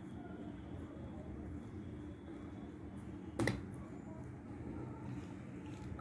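Faint scraping of a steel spoon stirring dry gram-flour mix with oil in a steel bowl, with one sharp metal clink of spoon on bowl about three and a half seconds in.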